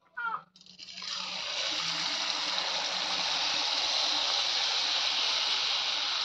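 Jaggery pitha batter frying in hot oil in an aluminium kadai, sizzling hard. The sizzle builds up about a second in and then holds steady.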